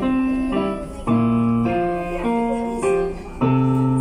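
Digital piano played solo: a slow melody of notes struck about every half second, each held, over deep bass notes that come in every couple of seconds.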